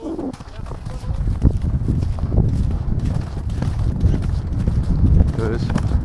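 Racehorse's hoofbeats on turf, close to a camera mounted on the horse, over a heavy, continuous low rumble.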